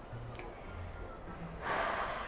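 Quiet room tone with a low steady hum, then a short audible intake of breath near the end.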